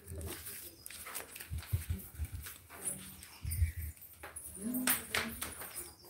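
A dog whimpering faintly in the background, with a few low thumps.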